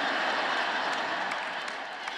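Large audience applauding, loudest at the start and slowly dying away.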